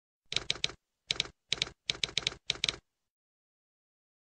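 Typewriter key strikes used as a sound effect: about fourteen sharp clacks in five quick clusters of two to four, over the first three seconds.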